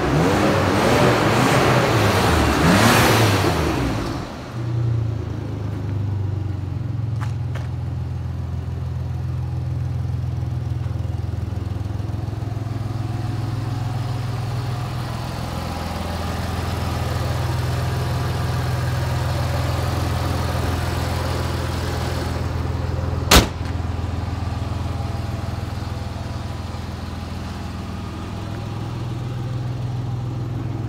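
Audi V6 engine running: revved briefly in the first few seconds, then idling steadily. A single sharp click about two-thirds of the way through.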